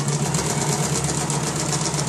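Janome electric sewing machine running at a steady speed, stitching a straight seam, its motor hum overlaid with a rapid, even patter of needle strokes.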